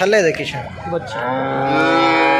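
A cow mooing: one long, low, steady call that begins just over a second in.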